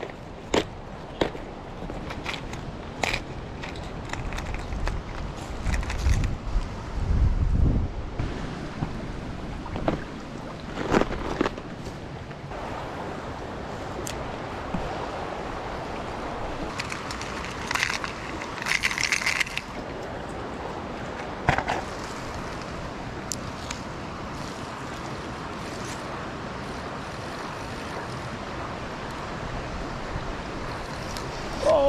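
Clicks and rattles from a clear plastic tackle box and its lures being handled, with wind rumbling on the microphone for a couple of seconds near the middle. Later a steady rush of shallow creek water, broken by a few sharp clicks.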